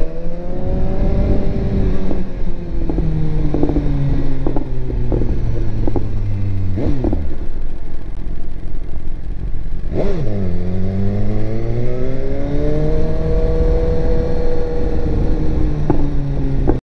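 A 2018 BMW S1000RR's inline-four engine rides at low town speed, its pitch rising and falling as the throttle is opened and eased. The revs dip quickly and recover twice, about seven and ten seconds in. Short clicks and knocks sound over the engine in the first half.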